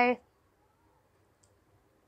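A woman's spoken word ends right at the start, then quiet room tone with one faint, short click about one and a half seconds in.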